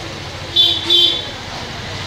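A vehicle horn sounding twice in quick succession, two short toots about a second in, over a steady street din.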